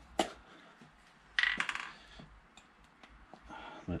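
Small metal parts clinking on a workbench: a short click near the start, then a brief metallic jingle with a little ringing about one and a half seconds in.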